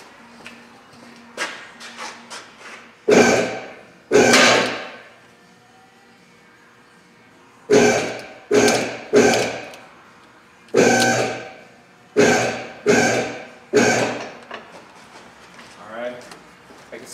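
Automotive shop lift's hydraulic pump motor bumped on in short bursts to raise the truck a little, about nine times: two near the start, then a pause, then seven in quick succession. Each burst starts suddenly and dies away as the button is released.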